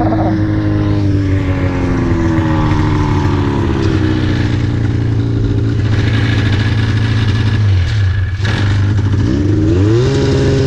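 2004 Polaris RMK 800 snowmobile's two-stroke engine running, its pitch sinking slowly for several seconds. About eight seconds in the engine speed dips, then it revs up again near the end.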